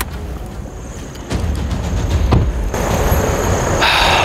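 A car running nearby with a low rumble, with a few knocks and a hiss that grows louder near the end.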